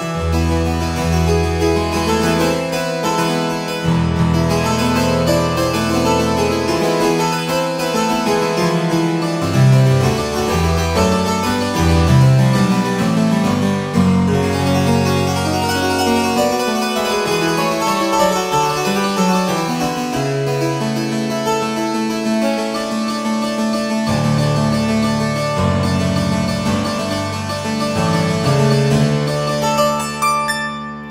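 Sampled English harpsichord, the Realsamples library, with its upper and lower 8-foot stops sounding together, played from a keyboard: a continuous passage of plucked chords over changing low bass notes.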